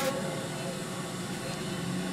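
Faint, steady ambient race noise from a television broadcast, played through the TV's speaker, with a single click right at the start.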